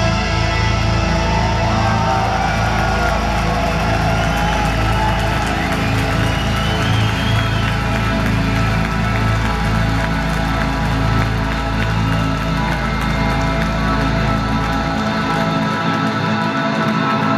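Live progressive metal band playing a slow passage of held, ringing chords over a steady low drone with a slow pulse. The lowest notes drop out near the end.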